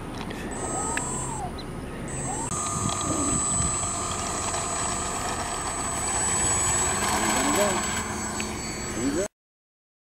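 Electric motors of a radio-controlled Ju 52 model airplane whining steadily at takeoff power, growing louder as it rolls and lifts off. The sound cuts off abruptly near the end.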